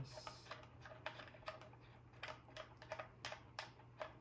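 A run of small, irregular clicks and ticks as fingers turn and seat a speaker's binding-post caps over the metal jumper plates.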